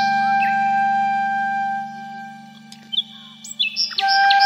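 Flute background music: a long held flute note over a steady low drone, fading out about two seconds in. Birdsong chirps are mixed into the track near the end.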